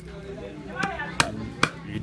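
A hand carving tool chopping into teak wood with sharp, short strikes, one faint one and then a strong one about every half second from about a second in.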